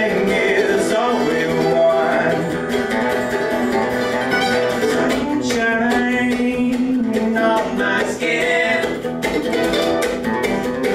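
Acoustic guitar and mandolin playing a song together live, with a man singing over them near the start and again near the end.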